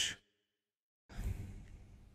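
The end of a spoken word cut off into dead silence, then about a second in a man's breath drawn close to the microphone, lasting about a second.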